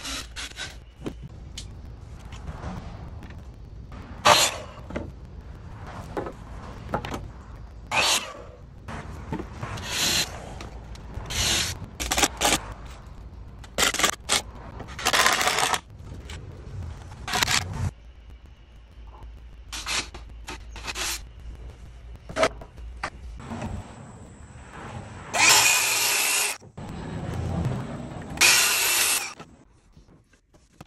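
Woodworking power-tool work on wooden framing boards: short bursts of a cordless drill driving into the boards, amid knocks and clatter of lumber. Two longer, louder tool runs come near the end.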